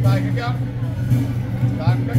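A person's voice talking over a steady low hum, with a short pause in the middle.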